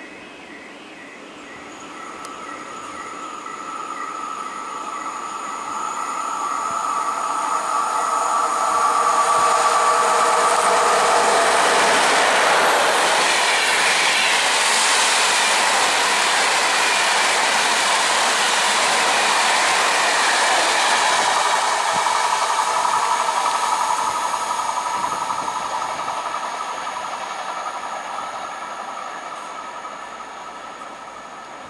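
An EP09 electric locomotive hauling a long rake of Russian Railways (RZD) passenger coaches passes through the station. The sound builds as it approaches, with steady whining tones over the rumble. The wheels run loudly on the rails for about ten seconds in the middle, then it fades away as the last coaches recede.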